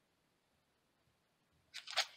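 Near silence, then near the end a brief, faint rustle and click as a hard plastic card holder is handled and set aside.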